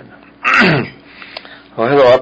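A man clears his throat once, in a short rasp that falls in pitch, about half a second in. Speech resumes near the end.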